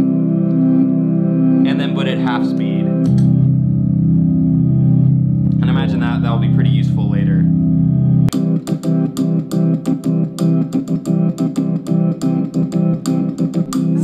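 Looped, pitch-shifted chord from a one-string shovel guitar played through a pedalboard of pitch-shifter pedals, droning as a steady organ-like stack of notes. A lower note joins about three seconds in and drops out about eight seconds in, after which the chord turns into rapid choppy pulses.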